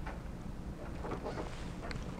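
Classroom room tone between spoken phrases: a steady low rumble with a few faint scattered rustles.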